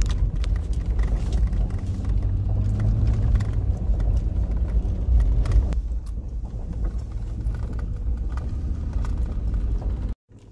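Low, steady road rumble of a vehicle being driven, heard from inside the cabin, with faint scattered ticks; it eases a little about six seconds in.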